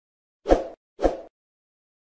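Two short pop sound effects, about half a second apart, each fading within a few tenths of a second, as the elements of a subscribe-button animation pop onto the screen.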